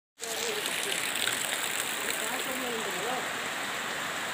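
Steady rushing hiss of water, even and unbroken, with faint voices underneath.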